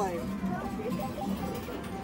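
Arcade din: short electronic beeps and jingles from the game machines, with background chatter and a steady hum.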